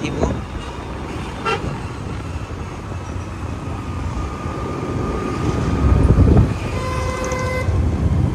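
Wind and road rumble from riding a two-wheeler through city traffic, with a vehicle horn honking once, briefly, near the end.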